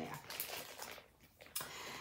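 Faint rustling and crinkling of a clear plastic bag of wax melts being handled, with a brief pause about a second in.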